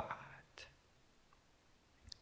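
Near silence: room tone as a man's speech trails off, with one faint click about half a second in.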